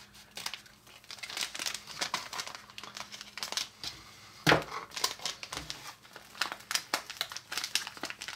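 Plastic candy pouch crinkling as it is handled and squeezed, with irregular crackles and a louder one about halfway through, while powdered candy is tipped out of it.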